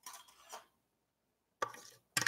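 Faint kitchenware handling: a few light clicks, then a louder short clatter near the end as a plastic food processor bowl and a spoon are picked up.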